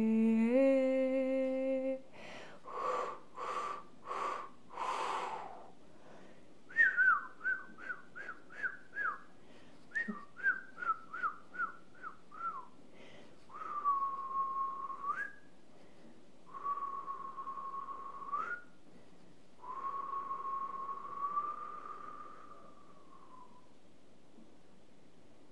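A woman hums a held note, then makes four breathy blowing sounds, then whistles: about a dozen quick falling chirps, followed by three long steady whistled notes, the last held about four seconds and sliding down at its end.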